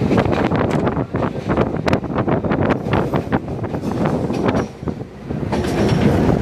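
Passenger train running at speed, heard at an open window: a steady wheel-and-rail rumble with a rapid, irregular clatter of clicks and knocks as the wheels run over rail joints. It eases briefly about five seconds in.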